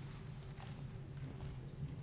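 Faint footsteps and a few soft knocks in a large hall, over a steady low electrical hum.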